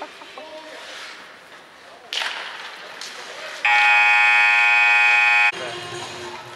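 Ice arena buzzer sounding one loud, steady tone for about two seconds, a little past halfway. There is a sharp knock about two seconds in.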